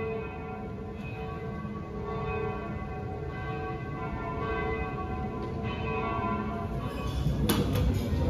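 Church bells ringing, with overlapping tones struck again about once a second. A brief clatter comes near the end.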